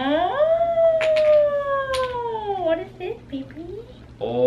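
A long, high, wordless vocal 'ooooh', lasting about three seconds: it rises quickly in pitch, then slides slowly down.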